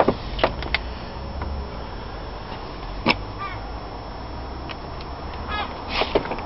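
Outdoor background with a steady low rumble, a few sharp clicks and a couple of faint short calls.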